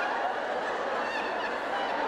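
Live audience applauding and laughing, with a few short high-pitched calls from the crowd about a second in.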